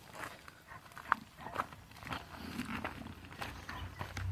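Pigs in a brick sty grunting faintly, with a few light steps and clicks.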